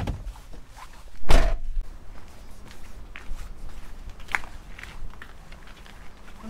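A van's driver door slammed shut, one heavy thud about a second in, followed by footsteps on tarmac with light scuffs and clicks.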